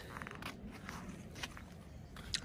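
Faint footsteps on an asphalt driveway, a few soft scuffs and ticks over low outdoor background noise.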